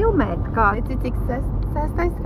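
Steady low road-and-engine rumble of a 2001 Audi A4 B6 2.0 petrol being driven, heard from inside the cabin, with a woman talking over it.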